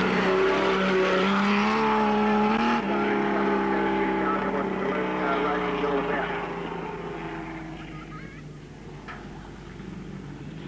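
Racing saloon car engine running hard on a dirt track. Its pitch climbs and then drops suddenly about three seconds in, holds steady, and fades away over the last few seconds.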